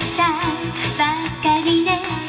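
A young woman singing a J-pop idol song into a handheld microphone over backing music with a steady beat, heard through the stage PA speakers.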